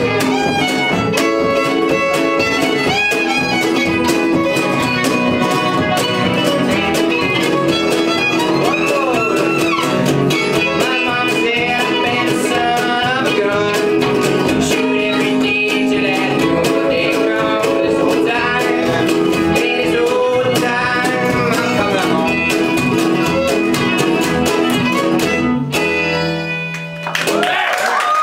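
Acoustic string trio playing live: fiddle carrying the melody with sliding notes over strummed acoustic guitar and plucked upright bass. The tune stops on a final chord near the end.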